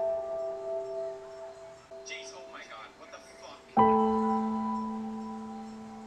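Slow, soft piano music: a held chord fades away, then a new chord is struck a little before the four-second mark and rings on, slowly dying.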